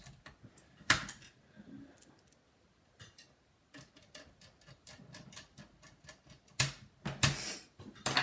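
Precision screwdriver driving a small screw into a laptop's cooling-fan mount: light metal and plastic clicks and ticks, with a sharp click about a second in and a couple of louder knocks near the end.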